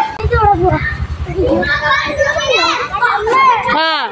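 Young children shouting and calling out as they play, with high squealing cries that rise and fall near the end.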